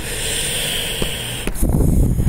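A steady hiss for about a second and a half, broken by two small clicks about one and one and a half seconds in, the clicks of a computer mouse choosing from a menu.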